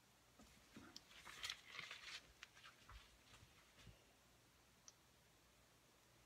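Faint handling noise: a run of soft clicks and rustles, densest about one to two seconds in and trailing off by four seconds, then one more click near five seconds.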